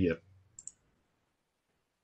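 A spoken word ends, then two quick, faint clicks come close together about half a second in, followed by near silence.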